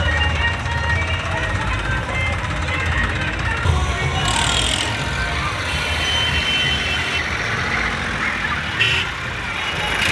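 Massey Ferguson tractor's diesel engine running at low speed close by, a steady low rumble under crowd voices and music.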